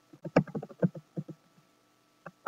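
Computer keyboard typing: a quick, uneven run of about ten keystrokes in the first second and a half.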